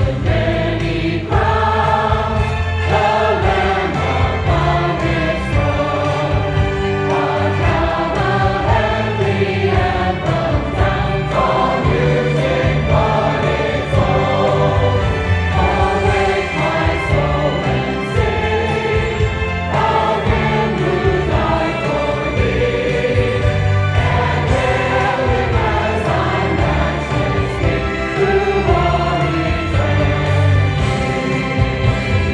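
A choir singing gospel music over an instrumental accompaniment with a strong, continuous bass.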